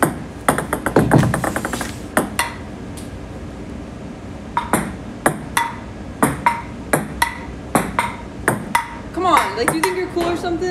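Ping-pong ball clicking off paddles and the table top: a few scattered bounces at the start, then from about halfway a quick steady rally of sharp ticks, about three a second. A voice comes in near the end.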